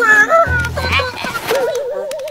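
Cartoon lemmings' high, squeaky, chattering vocalisations, with a short low thud about half a second in, then a wavering, trilling tone near the end.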